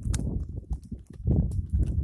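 Goats browsing a bush at close range: short sharp clicks and crunches of twigs being torn and hooves on rock, over a low rumble of wind on the microphone that swells twice.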